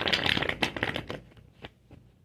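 Tarot cards being shuffled: a dense run of rapid card flicks lasting about a second, then a few separate clicks.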